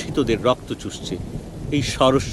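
Low rumbling thunder with rain beneath a voice reading a story aloud.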